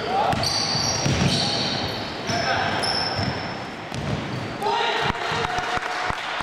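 Live basketball play in a gym hall: the ball bouncing, sneakers squeaking on the court floor, and players calling out, all echoing in the hall. A run of sharp knocks comes near the end.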